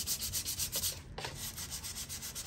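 Sandpaper rubbed by hand back and forth over a wooden speaker cabinet, smoothing down wood-putty patches: quick, even hissing strokes, several a second, a little softer in the second half.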